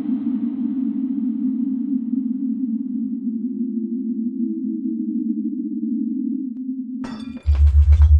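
A low, steady electronic drone from the film's sound design, with a faint hiss above it that fades away over the first few seconds. About seven seconds in, the drone cuts off abruptly, crackling clicks start, and a louder, deeper hum begins.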